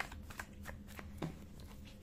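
A tarot deck being shuffled by hand: a faint run of short, irregular card clicks and flicks, several a second, thinning out in the second half.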